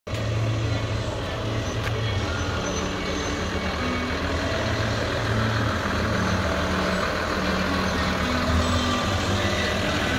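A Mercedes-Benz fire engine's diesel engine running steadily at low speed as the truck rolls slowly past close by.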